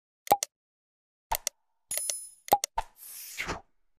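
Sound effects for a subscribe-button animation: several sharp mouse-click pops, a short bell ding about two seconds in, and a whoosh near the end.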